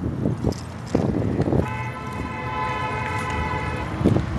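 A car horn sounding in one long steady blast of about two seconds, starting about a second and a half in.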